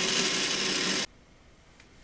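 Countertop glass-jar blender running with a steady motor hum, puréeing chickpeas, Greek yogurt and olive oil into hummus; it cuts off suddenly about a second in.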